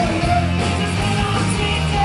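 A rock band playing live: electric guitars, bass guitar and a drum kit together, with a pitched guitar or vocal line bending up and down over the band.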